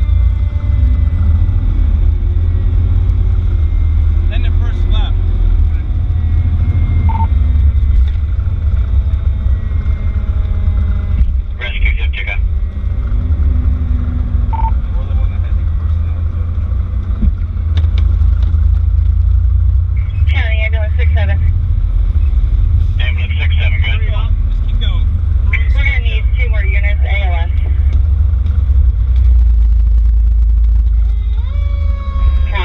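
Fire rescue truck (2002 Pierce Lance) driving, its engine and road noise making a steady heavy rumble, with a siren winding down in long, slowly falling tones through the first half. Short bursts of a voice come in about twelve seconds in and again from about twenty seconds in to near the end.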